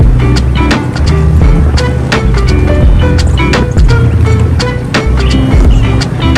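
Background music with a steady drum beat and a moving bass line.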